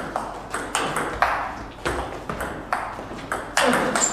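Table tennis rally: the ball is struck back and forth by rackets and bounces on the table, a series of sharp knocks at about two to three a second, each with a short ring of hall echo. One player is attacking and the other is playing back from the table.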